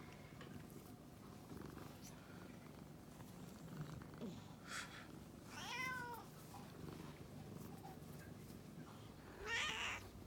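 Domestic cats being stroked: a faint steady purr underneath, a short meow that rises and falls about halfway through, and a louder rising meow near the end.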